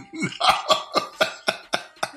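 A person laughing hard in a run of short, breathy bursts, about four a second.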